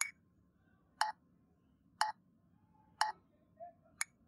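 Metronome clicking steadily once a second, about 60 beats per minute, keeping the beat of a four-beat bar.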